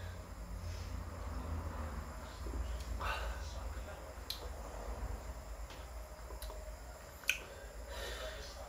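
A man sipping beer from a glass and swallowing, with small mouth clicks and one sharp tick near the end, over a low steady hum.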